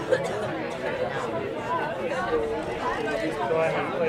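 Several voices talking and calling out at once, overlapping chatter of people on and around the pitch. There is a short sharp knock just after the start.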